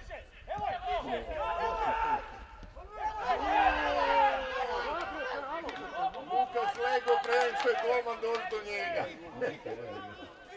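Several men's voices talking and calling out over one another, with no other sound standing out.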